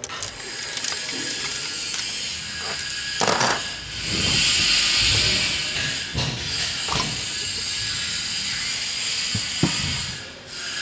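Metal parts of a hydraulic piston pump clicking and clunking as it is taken apart by hand in a vise, with scattered knocks and a stretch of hiss in the middle.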